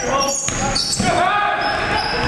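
Basketball dribbled on a hardwood gym floor, with sneakers squeaking as players cut, echoing in a large hall.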